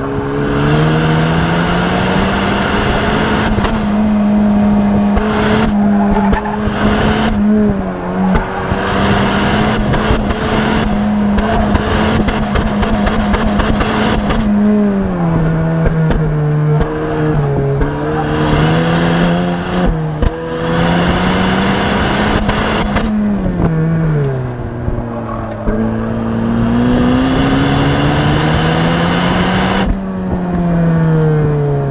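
Honda Civic Si coupe's turbocharged four-cylinder engine pulling hard at high revs on an autocross run. Its pitch holds high for long stretches, then dips and climbs again several times as the car slows and accelerates between corners, with a high hiss from the tyres at times.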